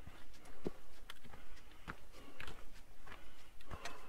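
Footsteps of a hiker climbing a rocky shale mountain trail: a steady walking pace, about three steps every two seconds.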